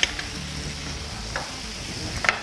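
Pieces of mutton trotters and bone frying with spices in a pot, sizzling steadily as they are stirred with a spatula. There is a sharper scrape at the start and another about one and a half seconds in.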